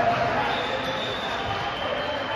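Indistinct voices of players and spectators in a school gymnasium, with the hall's echo.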